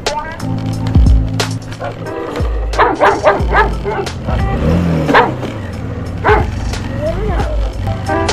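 Background music with a bass beat. From about three seconds in, a puppy gives a run of short barks with pitch that bends up and down over the music.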